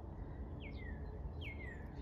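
Northern cardinal singing: two clear down-slurred whistles, each dropping steeply and then trailing lower, the first about half a second in and the second just before the end.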